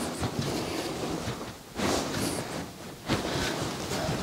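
Hands rubbing and pressing on a person's back and clothing during a massage: a steady rustle, with louder swells about two seconds in and again about three seconds in.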